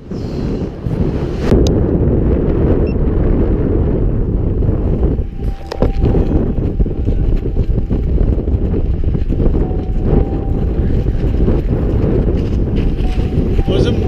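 Wind buffeting an action camera's microphone under a parachute canopy: a loud, steady, low rumble that swells in over the first second.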